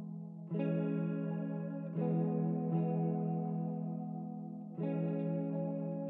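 Slow ambient music from a single clean electric guitar run through effects: sustained chords ring out, with new chords struck about half a second, two, and nearly five seconds in.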